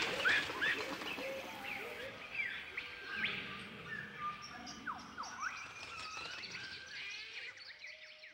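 Jungle ambience sound effect: many birds chirping and calling, with quick whistling swoops, over a faint background hiss. It fades out near the end.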